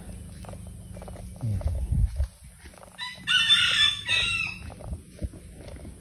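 A rooster crowing once, about three seconds in, a high call lasting about a second and a half. Shortly before it comes a brief low falling sound.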